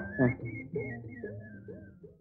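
A person whistling a wavering, high tune that steps up and down and slides lower before stopping near the end, with a low voice sound underneath.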